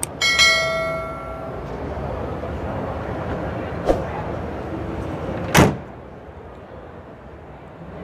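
Background noise of a busy exhibition hall. Just after the start a click sets off a bell-like chime that rings and fades within about a second and a half. A short loud knock comes about five and a half seconds in, after which the background is quieter.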